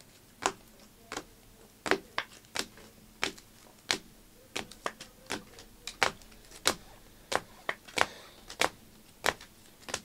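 Stack of trading cards in clear rigid plastic holders being shuffled by hand. The hard plastic cases click against each other in a series of sharp, irregular clicks, about two a second.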